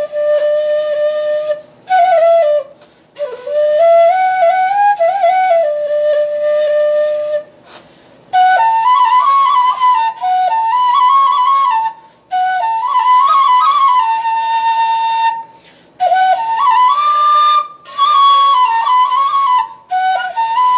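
Bansuri (bamboo transverse flute) played solo by a learner: a single melody in short phrases with brief pauses for breath. The first phrases sit lower, and from about eight seconds in the tune moves higher.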